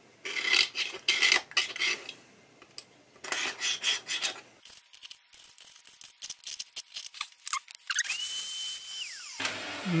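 The back edge of a scalpel blade scraping down the wooden key slots of a melodeon's open keyboard. It makes a series of short, rasping strokes, then lighter ticks and scratches. A thin steady high tone sounds briefly near the end.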